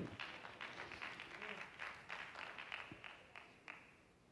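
Scattered hand clapping from a congregation, faint and thinning out until it stops near the end.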